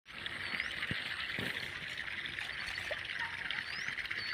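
Irrigation water trickling along a muddy furrow, with a hoe knocking and scraping in the wet soil twice, about a second in and about a second and a half in.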